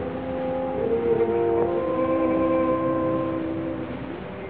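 Opera orchestra holding sustained chords that change twice, swelling about a second in and easing near the end. The sound is thin and muffled, with steady hiss and rumble from an early-1930s live recording.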